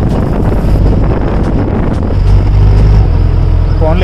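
Wind rushing over the microphone and a vehicle's low engine rumble, heard from inside an open-sided vehicle moving along at speed. The rumble shifts slightly about three seconds in.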